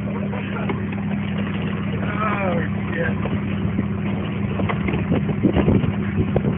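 Vehicle engine idling with a steady low hum. A brief falling cry comes about two seconds in, and a run of knocks near the end.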